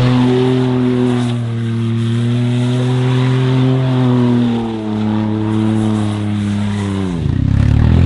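Smart fortwo's engine held at steady high revs while the car drifts in circles on PVC drift sleeves over its rear tyres, with a hiss from the sliding sleeves underneath. Near the end the revs drop sharply for a moment and climb back up.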